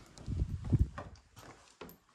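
Footsteps of a person walking across a floor, a handful of soft low thuds, most of them in the first second.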